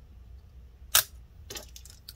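One sharp click about a second in, followed by a few faint clicks: a DDR4-2666 laptop RAM stick (SO-DIMM) being pressed down until its slot's side latches snap shut, the sign that the module is seated and locked.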